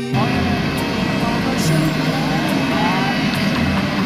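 A parked jet airliner running on the apron, a loud, steady, dense noise, with people's voices over it. It replaces the background music abruptly at the start.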